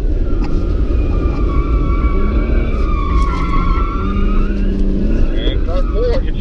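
BMW car driven hard through a corner, heard from inside the cabin: steady engine and road rumble with tyres squealing in long, wavering tones.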